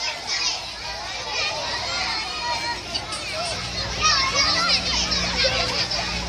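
Children playing and shouting, several high voices calling and squealing over one another. A low steady hum joins in the background from about halfway through.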